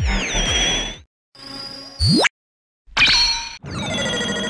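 A string of short electronic sound effects with brief silent gaps between them: a burst with wavering tones, a fast rising sweep about two seconds in, then hits with ringing, chime-like tones near the end.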